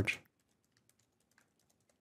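Computer keyboard typing: a quick run of faint keystrokes.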